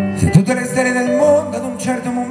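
Live music: a man singing into a handheld microphone over a sustained keyboard-like accompaniment, with a brief thump near the start.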